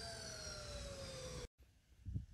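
A faint, distant siren, its tone falling slowly. The sound cuts off abruptly about one and a half seconds in, leaving near silence.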